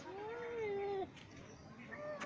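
A long, drawn-out wailing cry lasting about a second, followed by a shorter, higher call.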